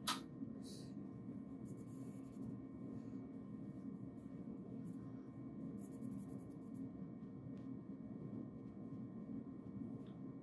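Faint steady hum of a continuous inkjet printer running through its print-and-clean cycle, with one sharp click right at the start and two brief faint hisses about two and six seconds in.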